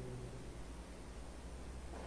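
Quiet room tone: a steady low hum with faint hiss, no distinct sound.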